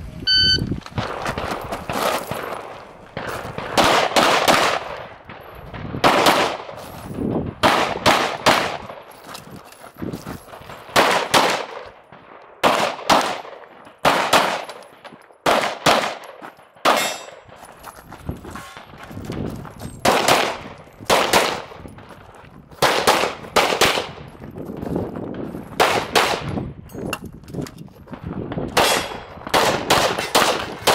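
Shot timer beep, then a handgun fired in rapid strings of shots during a USPSA stage run, the strings separated by short pauses.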